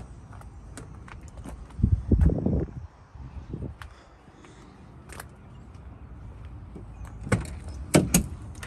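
Footsteps and phone-handling noise with scattered light clicks and a brief low rumble about two seconds in, then the truck's cab door latch clicking open near the end.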